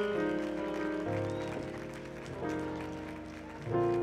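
Grand piano playing slow, held chords, a new chord struck about every second and a half.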